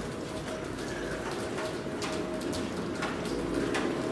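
Low, held cooing calls of a bird, with scattered short clicks of footsteps on wet stone paving.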